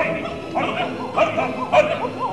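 Opera singers and orchestra in a live opera-house recording, the voices running through quick, short rising-and-falling notes several times a second over the orchestra.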